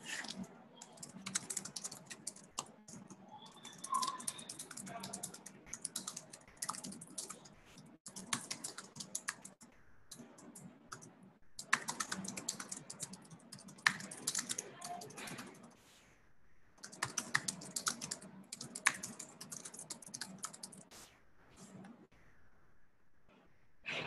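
Computer keyboard typing: several bursts of rapid keystrokes with short pauses between them.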